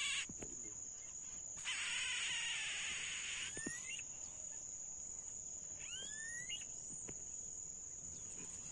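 Two short rising whistled calls from smooth-billed anis, one just before the middle and one about six seconds in. They sound over a steady high-pitched insect drone, with a soft hiss from about two to three and a half seconds.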